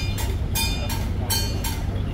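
Repeated ringing metal percussion strikes, like small gongs or cymbals, about five in quick irregular pairs, over a steady low rumble.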